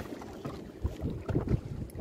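Wind buffeting the microphone, with a few irregular low thumps from handling on a small boat.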